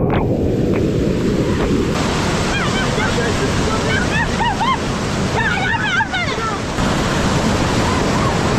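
Strong wind buffeting the microphone in a steady, rumbling rush. Between about two and a half and six and a half seconds in, a few clusters of short, high chirping calls sound over it.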